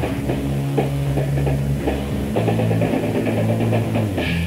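Punk rock band playing an instrumental stretch of a song on an early demo recording: electric guitar chords over bass and fast drums, with no vocals. The chords change about a third of a second in and again around the two-second mark.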